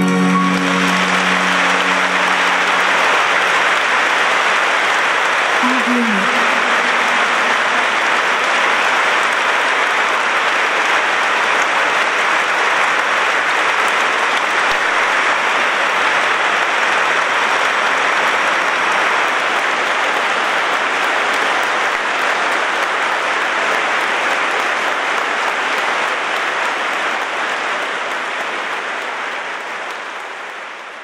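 A large audience applauding, a dense steady clapping that fades out near the end. A held final sung note dies away under the applause in the first three seconds.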